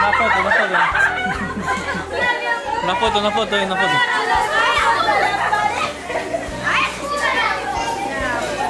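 A crowd of children and girls chattering and calling out over one another, with music playing underneath.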